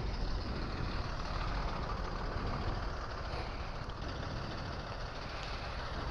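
City street traffic: a bus driving past and vehicle engines running at an intersection, a steady, even wash of noise with a low rumble.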